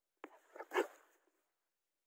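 An eight-month-old German shepherd making one short vocal sound, lasting under a second.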